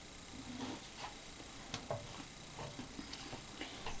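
Faint scratching with scattered light ticks as a toothpick scores vein lines into a foamiran (craft foam) leaf lying on paper.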